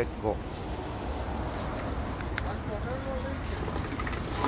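City street background noise: a steady low rumble, with a few faint clicks and a distant voice near the end.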